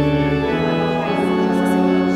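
Organ playing slow, held chords that change twice.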